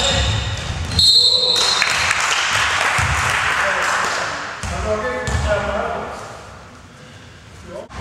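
Basketball game sounds in a gym: a referee's whistle blows once, briefly, about a second in. It is followed by a few seconds of general hall noise, with the ball bouncing on the court floor and players' voices.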